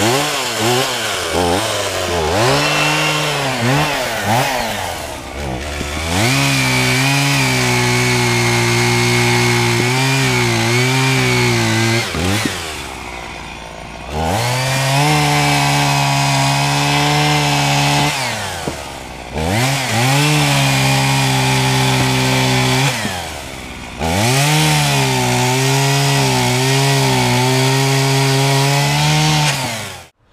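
Two-stroke chainsaw cutting firewood logs: quick throttle blips at first, then four long cuts held at high revs, the engine dropping back toward idle between cuts.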